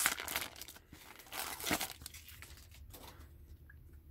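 Foil wrapper of a trading-card pack torn open and crinkled, in two bursts within the first two seconds, then only faint rustling as the cards are slid out.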